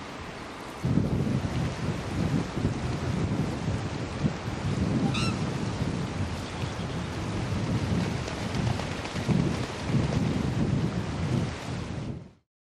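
Wind buffeting the microphone over the steady rush of a wide river, with a single brief goose-like honk from a waterbird about five seconds in.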